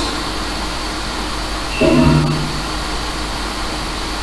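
Afterlight Box ghost-box software playing a steady hiss of static, broken about two seconds in by one short, clipped pitched fragment from its audio sweep.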